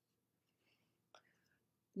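Near silence: room tone, with one faint click a little past the middle and a few soft breathy traces.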